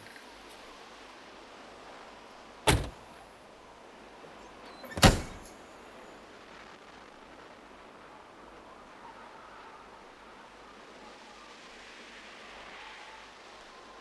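Two sharp car-body slams about two and a half seconds apart, the second with a short ring-out, from the car's trunk lid and doors being shut, over faint outdoor quiet.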